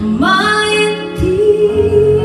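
A woman singing live into a microphone over instrumental accompaniment. Her voice slides up into a long held note, and a new sung line begins a little after a second in.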